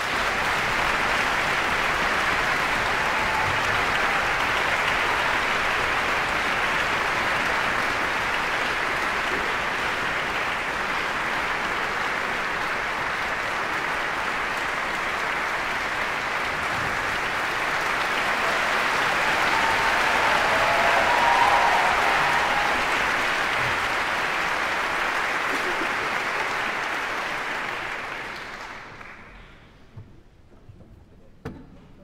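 Audience applauding in a large concert hall, a steady, sustained ovation that swells a little about two-thirds of the way through and dies away near the end.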